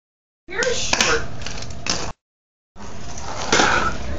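Fingerboard clacking on wooden ramps and floor, a few sharp clicks with brief voices, cut twice by short dead-silent dropouts.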